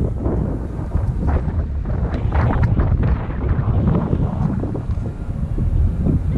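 Wind buffeting the camera microphone: a loud, steady low rumble. A few brief, fainter sharper sounds come through it around the middle.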